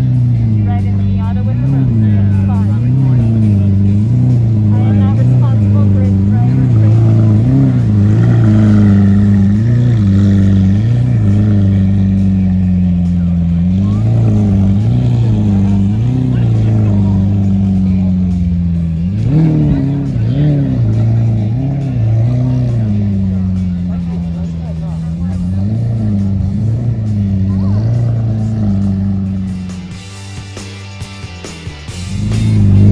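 Lamborghini Aventador's V12 idling and being blipped over and over, the revs rising and falling about once a second, with one bigger rev about two-thirds of the way through.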